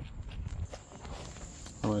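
Low outdoor background noise with soft handling knocks and steps as a hand-held phone is moved about, and a faint steady high-pitched tone under it.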